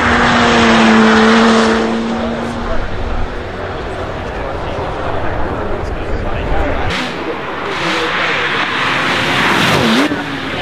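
Bentley Batur's twin-turbocharged 6.0-litre W12 engine driving past at speed. It is loud with a steady engine note for the first couple of seconds, quieter in the middle, then loud again from about seven seconds in as the car passes once more.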